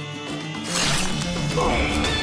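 Dramatic soundtrack music with a sharp swishing strike effect about a second in, the sound of a blow landing in a fight, followed by a short grunt.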